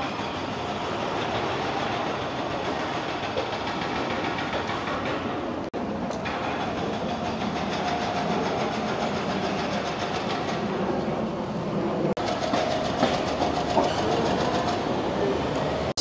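Busy city street traffic: a steady rumble and hiss of vehicles passing, broken by two brief dropouts.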